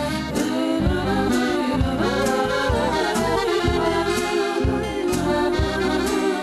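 Instrumental music with a steady beat, about two beats a second: the band's instrumental passage of a Russian song before the vocals come in.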